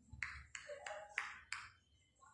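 Marker pen writing on a whiteboard: about five short, faint strokes in quick succession as a word is written.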